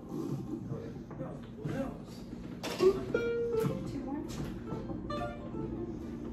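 Guitars noodling quietly between tunes: a few short plucked notes around the middle, over a steady low tone and scattered soft clicks, with faint talk in the background.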